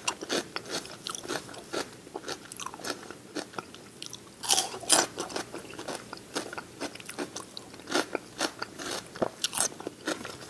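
Close-miked ASMR chewing of crunchy celery, with wet mouth noises and many small crackles. Louder crunches come about four and a half seconds in, and again near eight and nine and a half seconds.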